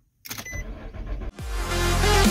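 Truck engine being cranked by the starter for about a second after the ignition key is turned, cut off abruptly. Loud electronic intro music then starts and fills the rest.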